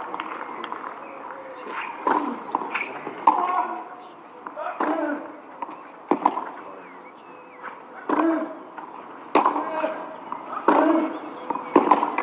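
Tennis rally on a clay court: racket strikes on the ball alternate between the two ends about every second and a half, with short grunts from the players on several of the shots.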